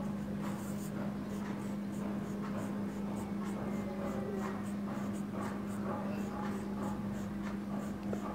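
Handwriting: a pen scratching in many short, irregular strokes, over a steady low hum.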